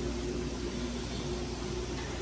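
Steady low machine hum with a faint constant tone, even throughout.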